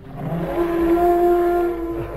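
Creature call sound effect for a reimagined elephant: a single loud call held on one steady pitch for about two seconds, with a low rumble beneath it, fading out just after the end.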